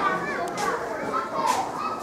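Background chatter of many children's voices calling and talking over one another while they play.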